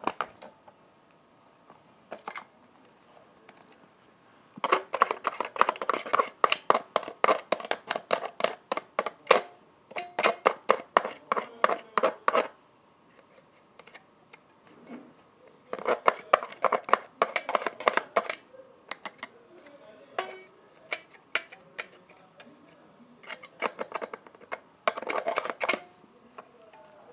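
Corroded battery contacts in a toy being scraped clean, rapid scratching strokes in three bursts: a long run of about eight seconds, a shorter one of about two seconds, and a brief one near the end.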